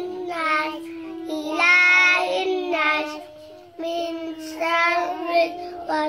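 A young child chanting Quran recitation in a melodic voice, with long held and gliding notes and a brief pause a little past the middle.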